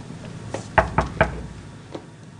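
Three quick knocks on a wooden door, about a quarter of a second apart.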